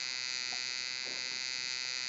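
A steady electrical buzz with a high whine above it, unchanging and with no singing: the background noise picked up by the recording microphone in a pause between sung lines.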